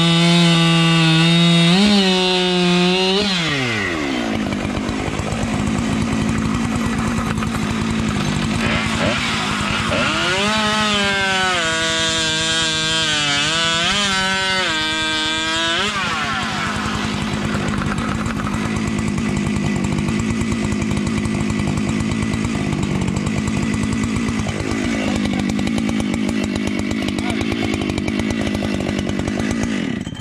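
Husqvarna two-stroke chainsaw at full throttle, finishing a cut through a log. About three seconds in its pitch falls sharply as it drops to idle. It idles, is revved up and down several times from about ten to sixteen seconds in, then idles again.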